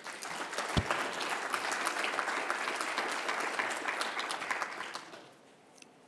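Audience applauding, a dense patter of clapping that dies away about five seconds in.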